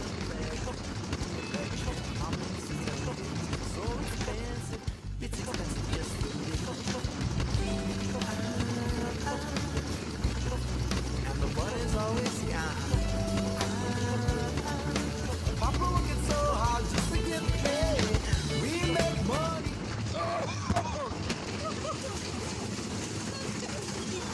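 Background music over the clatter and rush of the Giant Dipper wooden roller coaster running on its track; the rushing hiss eases in the last few seconds as the train slows.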